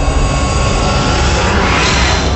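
Cinematic whoosh sound effect: a loud, rumbling rush of noise that builds and grows brighter near the end.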